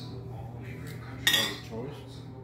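Empty glass Ball jars clinking together once, a sharp clink about a second in that rings briefly and fades.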